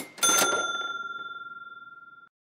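A sharp crack, then a bell struck once, its clear ringing tone fading slowly.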